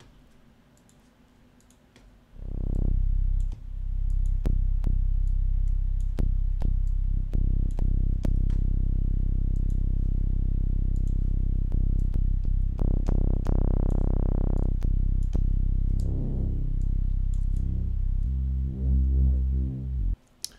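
Arturia Pigments software synth playing a deep bass patch in legato glide mode. It sounds low, sustained notes that come in about two seconds in, turn brighter for a couple of seconds around the middle, and step between pitches near the end. Light clicks sound throughout.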